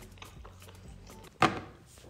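A single sharp click about one and a half seconds in, over a quiet background with faint music.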